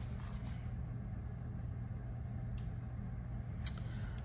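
Steady low background hum, with a faint click near the end.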